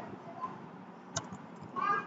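A quiet room with a single keyboard keystroke about a second in, then a short high-pitched call, like a small animal's cry, near the end.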